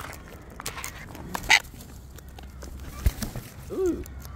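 Sulphur-crested cockatoos feeding at a seed tray: scattered sharp clicks of beaks working the seed, a short harsh squawk about a second and a half in, and a brief low rising-and-falling call near the end.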